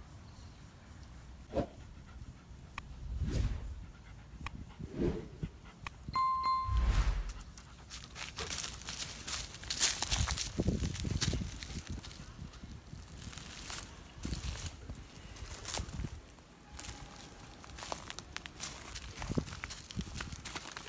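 Footsteps and rustling through dry leaf litter and undergrowth, with knocks and bumps, busiest in the middle. About six seconds in there is a single short beep.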